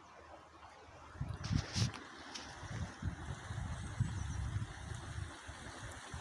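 Wind buffeting the microphone in uneven gusts from about a second in, with a few sharp handling knocks soon after, over the faint rush of the river.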